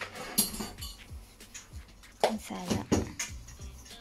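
Light clinks and knocks of metal kitchenware, a bowl and utensils being handled, over background music, with a short spoken word about two seconds in.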